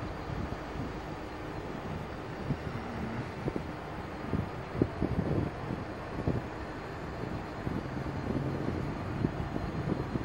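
Steady low rumbling background noise, like wind on the microphone, with a few irregular low thumps.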